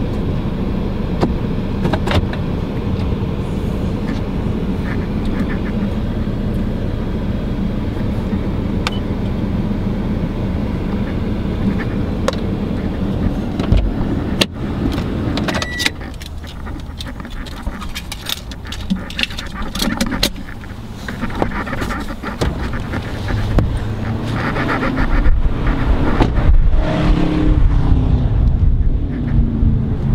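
Steady cabin hum of a 2014 Toyota RAV4 idling, heard from inside the car. About halfway through there is a sharp click, followed by scattered knocks and handling noise. In the last few seconds wind rumbles on the microphone.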